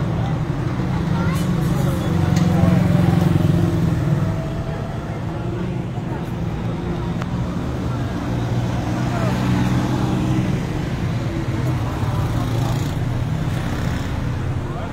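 Street traffic with motorcycle engines running and passing, loudest about two to four seconds in, with a steady hum of traffic throughout.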